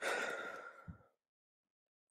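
A man's breath close to the microphone, a sigh lasting about a second.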